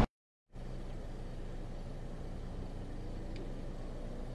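A moment of dead silence at the cut, then a steady low hum of an idling engine in the background.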